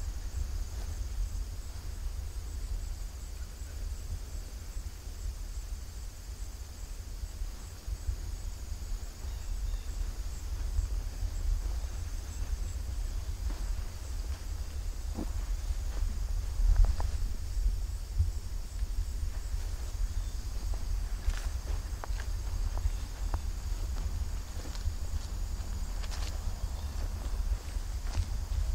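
Outdoor ambience: a steady low rumble with a constant high insect drone over it, and a few soft footsteps in grass.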